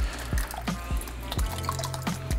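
Water dripping and splashing as a coral frag is taken from its water-filled shipping bag over a plastic holding container, with a few small drips, over quiet background music.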